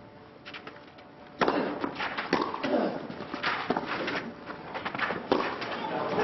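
Tennis rally on a clay court: a tennis ball struck back and forth by racquets, the first loud hit about a second and a half in, then sharp hits about a second apart. A few faint knocks come before it.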